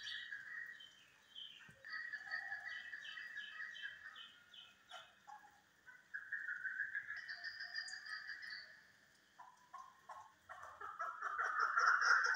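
Chukar partridges calling in repeated notes, with a quick run of about four notes a second early on; the calling grows louder near the end.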